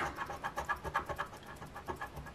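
A copper penny scratching the coating off a paper lottery scratch ticket in quick, rapid strokes.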